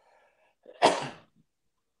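A single loud, sudden burst of breath from a woman, a cough or sneeze, about a second in, after a faint intake of breath.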